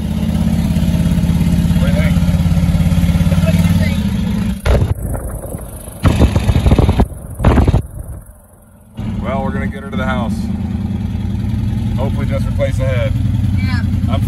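LS-swapped Chevy S10's turbocharged V8 running steadily. A few abrupt cuts with short loud bursts come in the middle, then the engine drone resumes with voices over it.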